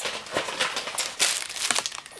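A plastic treat bag crinkling in irregular crackles as it is handled.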